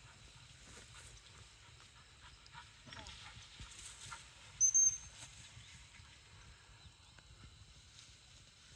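A short, high two-note whistle blast about halfway through, the loudest sound, fitting a handler's dog whistle. Under it, footsteps brushing through tall grass and a low wind rumble on the microphone.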